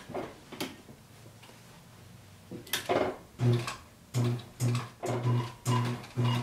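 Leather sewing machine running in short pulses, about two stitches a second, its motor humming with each stitch. A single click comes about half a second in, and a brief clatter just before the stitching starts, past the middle.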